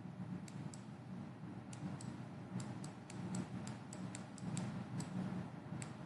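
Faint, light clicks, about fifteen at uneven intervals, from a stylus tip tapping on a drawing tablet while a word is handwritten, over a low steady hum.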